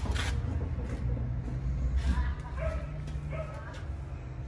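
Short, indistinct voice sounds about two seconds in and again about a second later, over a steady low rumble.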